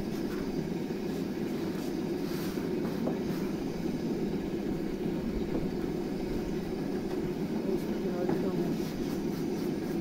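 Steady roar of the gas burner under a large iron sheet griddle, with a few faint soft handling sounds as thin dough is laid out on it.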